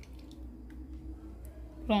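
Faint squelch of a small plastic squeeze bottle of coconut oil being squeezed onto a metal spoon, with a few soft clicks, over a low steady hum.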